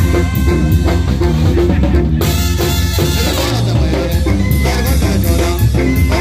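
Mexican banda music: brass instruments over drums keeping a steady, even beat.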